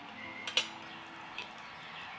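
A metal fork clinks once sharply against a ceramic dinner plate, with a fainter tap of tableware a little later, over quiet room tone.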